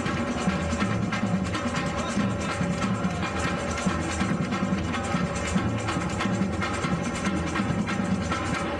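Batucada percussion ensemble playing a steady, dense samba rhythm: deep surdo bass drums under snare drums and other hand-held drums struck with sticks.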